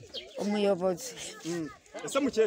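A woman's voice speaking in short bursts, with a brief pause near the end.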